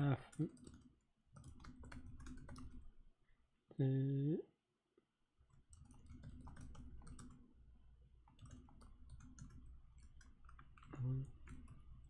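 Typing on a computer keyboard: a run of quick, irregular keystrokes with a short pause about five seconds in. A brief hum of voice comes about four seconds in and again near the end.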